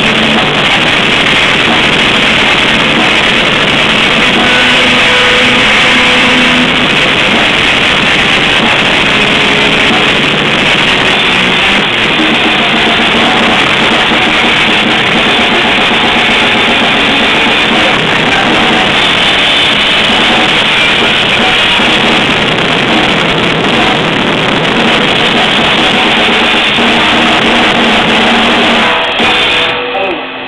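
Grindcore played live on a drum kit and a distorted electric guitar, a dense, loud and unbroken wall of drums, cymbals and guitar. It stops abruptly near the end.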